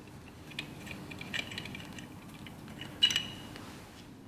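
Faint small metal clicks of a steel Time-Sert insert tool being turned and withdrawn from a freshly set thread insert in an engine block, with one sharper metallic clink about three seconds in.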